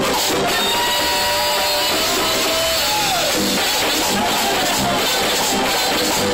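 Live bachata band playing loud and steady: electric guitar, güira scraping, bass and a regular beat. A held note slides down about three seconds in.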